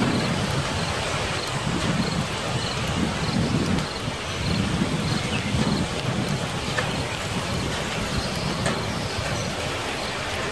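Storm ambience: a steady rush of rain and wind, with low rumbles that swell and fade about once a second.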